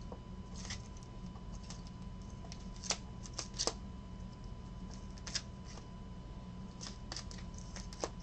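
Trading cards in rigid plastic toploaders clicking and sliding against each other as they are sorted by hand: a scatter of light clicks, the sharpest a little under three and four seconds in, over a steady low hum.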